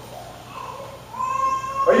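An infant's long, high-pitched cry or whine, held for about a second and rising slightly in pitch, before the preacher's voice comes back in.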